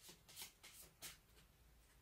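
Tarot cards being shuffled by hand: a quick run of faint papery swishes, about four a second, that stops a little after one second in.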